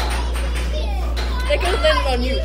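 Young people's voices chattering playfully, louder and livelier in the second second, over a steady low hum.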